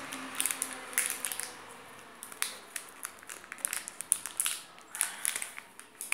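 Fingers working at a tightly closed earphone package: irregular small plastic clicks and crackles.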